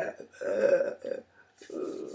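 A woman's voice making wordless, guttural vocal sounds in three short bursts.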